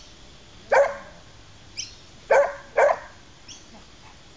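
A dog barking three times: one bark about a second in, then two close together, about half a second apart, in the second half.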